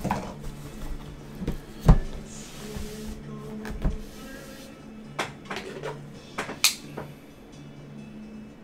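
Sealed cardboard trading-card boxes being handled on a tabletop: gripped, slid out of a stack and set down, giving a series of sharp knocks and scrapes, the loudest about two seconds in. Background music plays under it.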